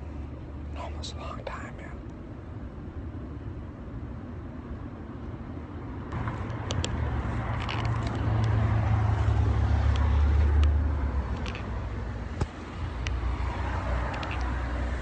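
Street traffic: a motor vehicle's low engine rumble swells about six seconds in, passes and eases off, with another building again near the end.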